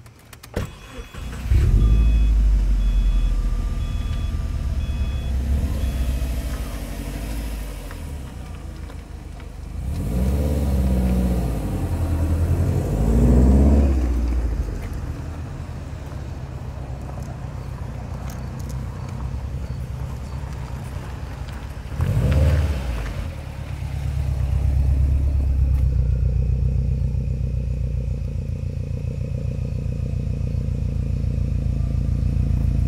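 A car door shuts, then a Subaru WRX's turbocharged flat-four engine starts and idles while a chime beeps about five times. The engine is revved in two swells midway, blipped once more later, and then runs steadily as the car drives.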